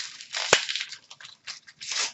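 Plastic trading-card pack wrapper being crinkled and torn open by hand, with one sharp snap about half a second in.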